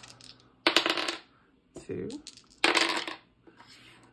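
A pair of small dice clattering on a hard desktop, in two short bursts of rattling clicks about two seconds apart.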